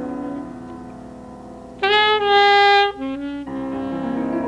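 Live jazz duo of alto saxophone and piano. Piano chords fade, then the alto sax comes in loudly about two seconds in with one long held note and a few short notes, before the piano chords pick up again.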